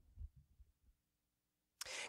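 Near silence: room tone, with a faint low thump about a quarter second in.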